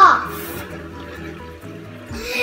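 A child's drawn-out vocal call, gliding up and back down, trails off in the first moment. Then quiet background music with held notes that step in pitch.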